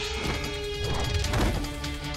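Staged fight sound effects: a few sharp hits and clashes over steady dramatic background music.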